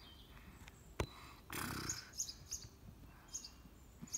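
Small birds chirping faintly in short bursts, with a single sharp click about a second in and a brief rustle about half a second later.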